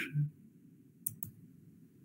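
The last syllable of a man's speech, then a pause in which a brief cluster of faint, sharp clicks is heard about a second in.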